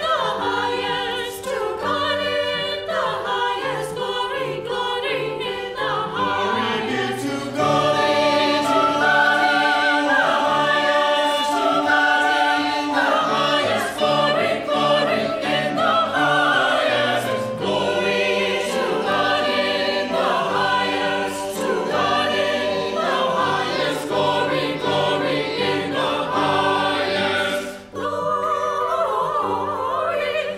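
Mixed-voice church choir singing a choral anthem in several parts, with held chords and changing harmonies, pausing briefly just before the end.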